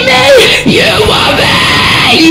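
Female vocalist's held note ending about half a second in, then yelled vocals over a loud metal backing track.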